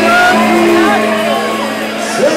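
Ethiopian pop band playing live, with singing over sustained keyboard-like tones, loud in a large hall.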